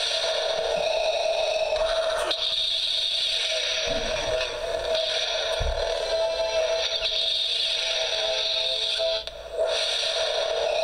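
Star Wars Darth Vader alarm clock radio playing an electronic sound effect through its small speaker: a loud, steady hiss over a strong hum, shifting every two or three seconds. It breaks off briefly near the end and then starts again.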